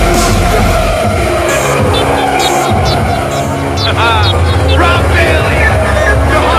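Loud background music, with quick sliding high notes about four seconds in.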